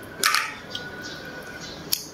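Close-up eating sounds of boiled crab: a short crackle a quarter second in, then a sharp click near the end, as crab shell is picked apart.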